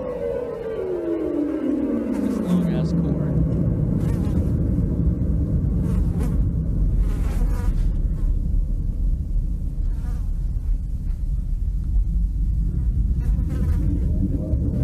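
An electronic sweep played over a PA falls steadily in pitch and settles, about two seconds in, into a loud, low buzzing drone that holds steady.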